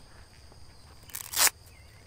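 Quiet outdoor background with a faint, steady high-pitched insect drone, broken just after a second in by one short, loud hiss lasting under half a second.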